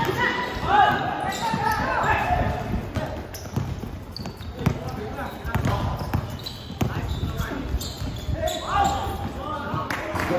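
A basketball being dribbled on a hard court, bouncing repeatedly, with players' and onlookers' voices calling out at the start and again near the end.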